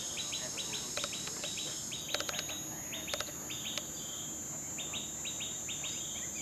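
Birds chirping in quick runs of short repeated notes over a steady, high-pitched insect drone, with a few sharp clicks about two and three seconds in.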